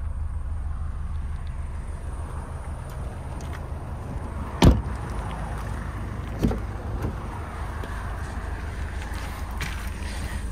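Ford Kuga's rear passenger door shut with a single sharp thud about halfway through, followed a couple of seconds later by a softer clunk as the driver's door latch is opened, over a steady low rumble.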